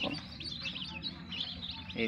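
Newly hatched chicken chicks in an incubator peeping, many short high chirps overlapping without a break. A steady low hum runs underneath.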